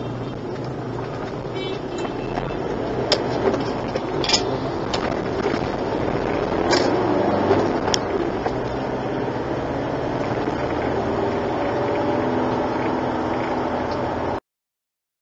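A car driving through city traffic, heard from inside: steady engine and tyre noise that builds over the first several seconds as it gets under way, with a few light clicks.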